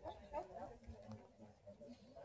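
A dog vocalising faintly, a few short calls.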